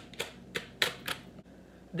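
Thin plastic wrapper of an individually wrapped cheese slice crinkling as it is peeled open, in a handful of short, sharp crackles.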